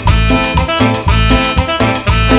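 Live tropical band playing an instrumental passage on keyboard, electric bass, guitar and drum kit, with a bass line pulsing about twice a second under keyboard chords.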